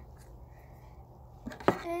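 A lipstick tube handled and set down on a tabletop: a soft click and then one sharp click near the end, over faint room tone.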